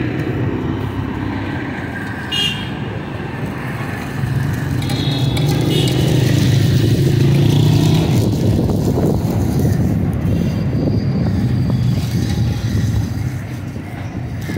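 Street traffic: a motor vehicle engine rumbles, swelling to its loudest in the middle and fading again, with two short high toots in the first half.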